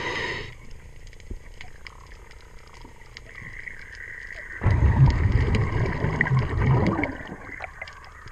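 A diver's breathing regulator underwater: a short inhalation hiss at the very start, then a loud, low, rumbling rush of exhaled bubbles from about halfway through to near the end, with small clicks scattered throughout.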